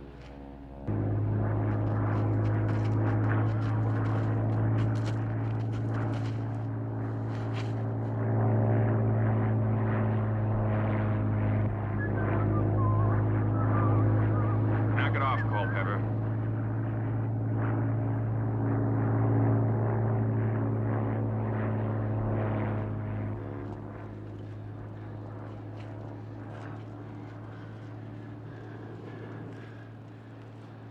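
Propeller aircraft's piston engine droning steadily with a strong low hum. It cuts in abruptly about a second in and falls to a quieter level about 23 seconds in.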